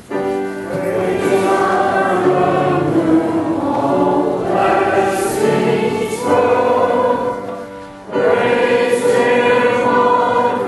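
A choir singing. It comes in abruptly at the start, dips briefly about eight seconds in, then comes back in with the next phrase.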